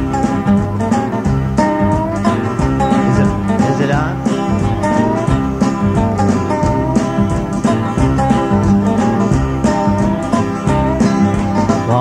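Country band playing an instrumental intro before the vocal comes in: guitars and bass under a gliding, sliding lead melody line, with a steady beat.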